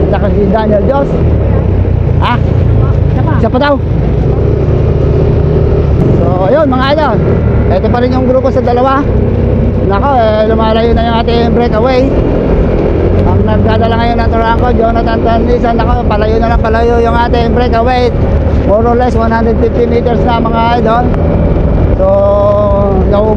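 Steady low rumble of wind and a motor on a camera moving along the road, with a voice talking loudly over it from about six seconds in.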